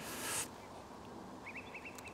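A brief rustle at the start as small scissors are drawn from a jeans pocket, then a quick run of faint bird chirps near the end.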